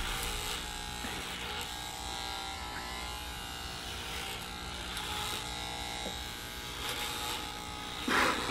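Remington electric hair clippers buzzing steadily as they cut hair at the back of the neck.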